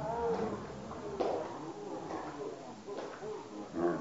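Men's voices shouting and calling across an outdoor football pitch, with a sharp knock about a second in and another near the end.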